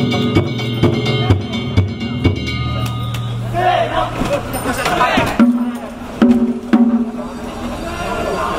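Danjiri festival drumming: taiko drum and percussion beaten in a steady rhythm, with shouted voices around the middle. After that come heavy drum strokes with a ringing tone, about two a second.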